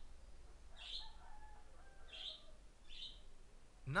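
Faint bird chirps: several short, high chirps about a second apart, over a low steady hum.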